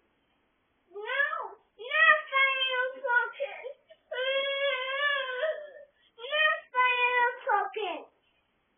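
A toddler's high voice babbling in a sing-song way without clear words. It comes in about five short phrases with brief pauses, and the middle one is a long, wavering held note.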